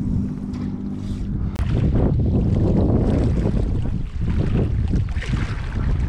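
Wind buffeting the microphone, with small waves washing and splashing against the jetty rocks.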